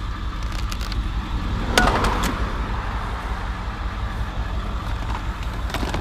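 Vehicle engine idling with a steady low rumble. Over it come a few sharp plastic clicks and a short rattle about two seconds in, and another click near the end, as plastic toys are handled.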